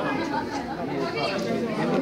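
Several people talking at once in indistinct crowd chatter.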